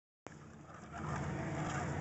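A car's engine and road noise heard from inside the cabin while it drives, a low steady hum that grows louder about a second in.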